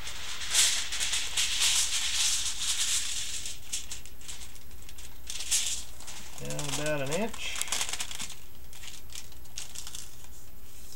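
Aluminum foil crinkling and rustling as it is drawn off the roll and smoothed flat by hand over a glass pane. It is busiest in the first three seconds, then thins to scattered crinkles.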